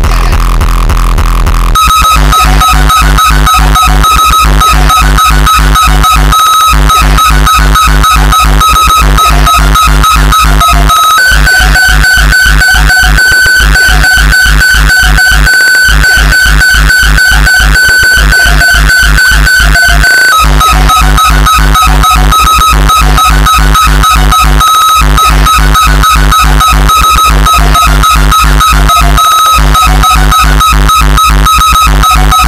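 Uptempo hardtekk electronic dance track playing loud: a fast, driving kick drum with a high held lead tone over it. The kicks come in about two seconds in and drop out briefly every few seconds, and the lead steps up in pitch for the middle stretch.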